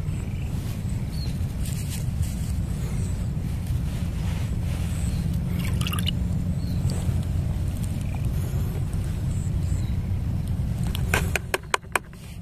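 A steady low rumble, with a few sharp clicks close together near the end.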